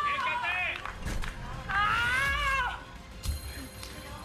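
People shouting and cheering in long drawn-out calls, twice, with a couple of sharp knocks in between.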